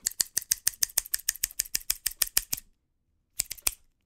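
A rapid run of sharp clicks, about eight a second, lasting nearly three seconds, then a short quick burst of four more near the end.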